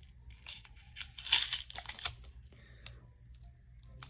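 Fingernails picking at and tearing the wrapping on a roll of washi tape: small crinkles and clicks, with a louder stretch of crinkling and tearing about a second in that lasts about a second.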